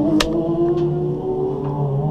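Straight-six engine of a BMW E46 M3 race car running at a steady pitch that creeps slightly upward, with one sharp click just after the start.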